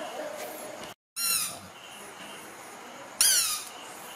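A baby monkey giving two short, high-pitched squealing calls, each sliding down in pitch, the first about a second and a half in and the second near three and a quarter seconds.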